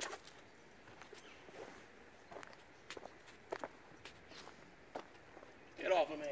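Soft, irregular footsteps on a dirt and leaf-litter forest path, faint.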